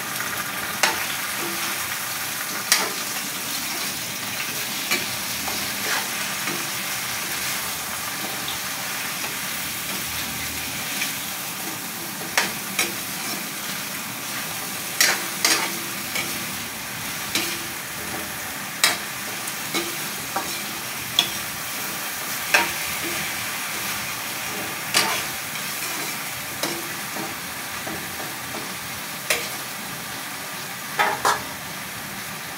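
Sliced sponge gourd (patola) sizzling in oil in a metal wok over a gas flame, while a metal spatula stirs it. The spatula scrapes and clinks sharply against the wok every couple of seconds, at irregular intervals.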